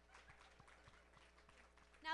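Near silence: room tone with a steady faint electrical hum and a few soft scattered clicks.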